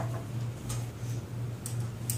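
A steady low hum that wavers a few times a second, with three sharp light clicks spread through it.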